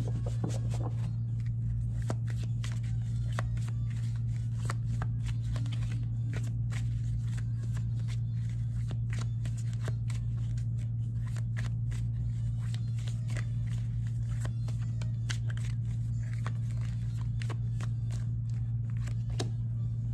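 A tarot deck being shuffled by hand: many light, irregular card clicks and flutters, over a steady low hum.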